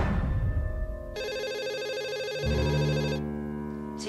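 A telephone ringing in a film soundtrack: one ring of about two seconds starting about a second in, over dramatic music that settles into a low sustained drone.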